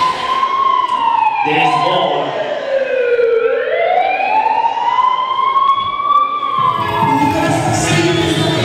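A siren sound effect laid into the dance music: one slow wail that falls for about three seconds, rises again and falls once more near the end. The beat drops out under it and comes back in about seven seconds in.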